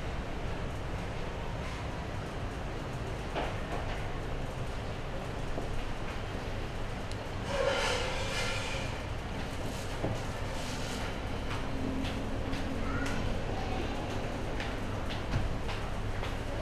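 Steady low background rumble of the room, with faint scattered clicks and a brief rustle about eight seconds in as the fish is handled.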